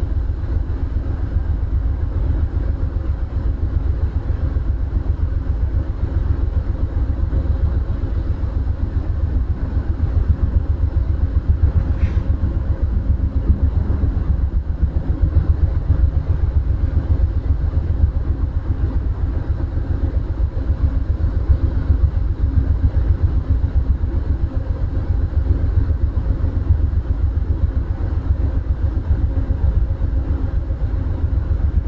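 Steady low rumble and hum of a standing passenger train, its diesel locomotive idling. A single faint click comes about halfway through.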